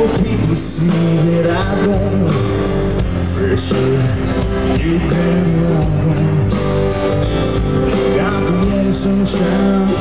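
Live country band music: strummed acoustic guitar with electric guitar, playing steadily.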